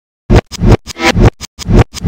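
Electronic soundtrack music that starts suddenly a moment in: a choppy, stuttering beat of short, loud hits with deep bass, about three a second.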